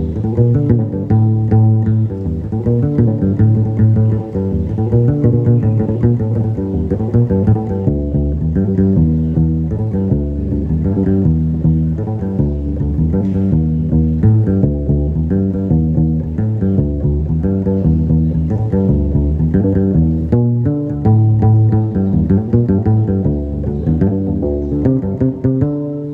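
Gnawa guembri, the three-string skin-covered bass lute, played solo: a repeating plucked bass riff.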